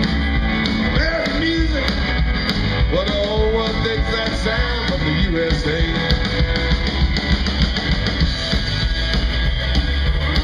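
Live rock and roll band playing loud: electric guitars, bass and drums. Through the first half, a lead electric guitar plays licks with bending notes over a steady bass and drum beat.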